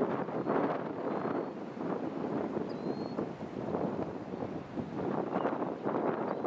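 Wind buffeting the microphone outdoors, an uneven, gusting rush with no steady tone.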